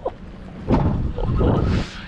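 Wind buffeting the camera microphone, rising to a loud gust that lasts about a second starting near the middle.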